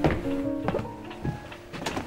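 Orchestral film-score music from virtual instruments: a sudden accent at the start, a held note, then a few soft, short hits.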